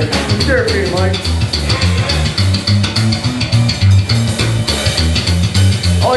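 Live rockabilly band playing: upright bass in a steady, evenly pulsing line under a drum kit and electric guitar.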